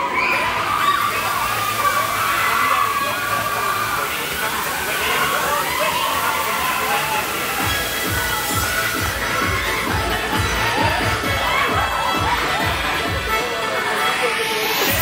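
Riders on a Mack Music Express fairground ride shouting and cheering over a steady rushing hiss, while the ride's sound system plays music; a heavy, regular bass beat comes in about eight seconds in.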